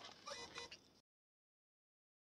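Near silence: a few faint, indistinct sounds in the first second, then the sound cuts out to complete silence.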